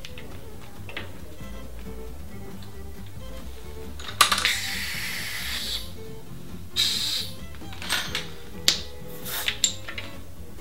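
Compressed air hissing into a bicycle tyre at the valve. A click starts a hiss of about a second and a half, a shorter hiss follows about two and a half seconds later, and a few sharp clicks come near the end as the air chuck is worked. Background music runs throughout.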